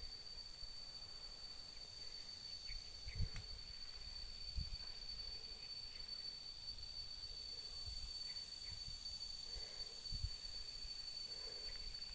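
Faint outdoor ambience of insects making a steady high-pitched drone, with a few soft low thumps a few seconds apart.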